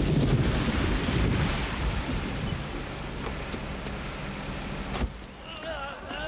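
Heavy rain in a downpour, with a low rumble of thunder at the start that fades within the first second or two, then a steady hiss of rain. It cuts off suddenly about five seconds in.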